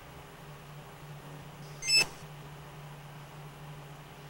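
A steady low hum, with one short, sharp, high-pitched beep-like click about two seconds in.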